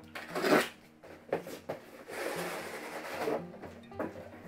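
Yellow snap-off box cutter slitting the packing tape on a cardboard shipping box, with a sharp rasp under a second in and a few short scrapes after it. Then cardboard scraping and rustling for about a second and a half as the box is opened.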